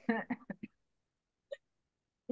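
A quick run of short, clipped voice sounds in the first half second, then quiet, with one faint brief vocal sound about a second and a half in.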